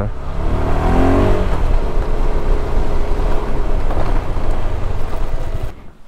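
KTM 390 motorcycle's single-cylinder engine running under way, with a rush of wind over it; the sound stops abruptly just before the end.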